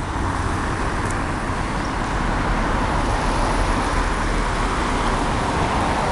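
Steady street traffic: cars passing on the road close by, a continuous wash of tyre and engine noise.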